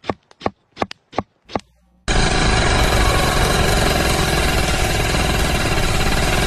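A quick run of short, evenly spaced beats, about five a second, stops after a second and a half. After a brief pause, a sudden loud, harsh, distorted blast of noise comes in and holds steady for about five seconds before cutting off abruptly.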